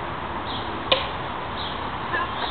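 A plastic wiffle bat hitting a wiffle ball: one sharp, hollow crack about a second in.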